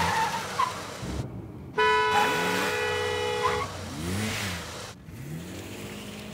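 A car horn sounds one long, steady blast about two seconds in, lasting nearly two seconds. Around it a car engine rises and falls in pitch.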